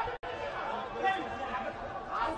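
Voices calling out and chattering over the steady murmur of an arena crowd, with no distinct punch sounds.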